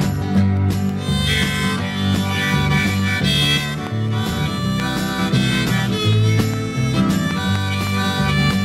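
Harmonica break in a 1971 country-rock band recording, backed by bass guitar and rhythm guitar, with no singing. The harmonica comes in about a second in and carries the melody over a steady bass line.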